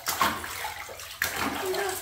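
Shallow bathwater splashing and sloshing in a bathtub around a wet hairless cat as it is scrubbed, with sharper splashes near the start and just past the middle.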